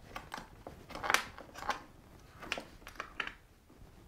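Clicks and scrapes of cables being unplugged from the back of a small desktop amplifier, seven or eight short handling noises with the loudest about a second in.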